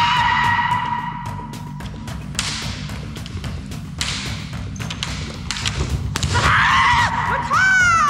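Kendo kiai: a long, high held shout in the first two seconds, then another shout near the end that rises and then falls in pitch. Between them come sharp knocks and thuds from the bamboo shinai and the stamping footwork of the men feint to kote strike.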